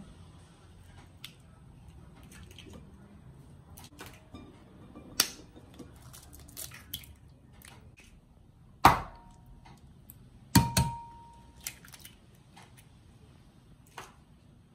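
Eggs being cracked one after another against the rim of a ceramic bowl: light clicks and taps of shell, with two sharp knocks about nine and ten and a half seconds in, the bowl ringing briefly after the second.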